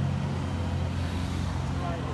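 Steady low rumble of road traffic on the street alongside, with faint voices in the background.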